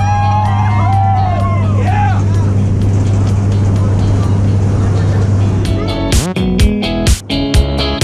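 Steady drone of a small jump plane's engine and propeller heard from inside the cabin while taxiing, with an excited shout from a passenger over it for the first couple of seconds. About six seconds in, strummed-guitar music comes in over it.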